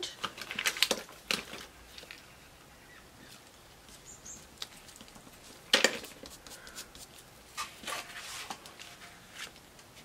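Hands pressing down and handling paper pieces on a scrapbook page: soft rustles and light taps in a cluster at the start, one sharp click near the middle, and a few more taps later on.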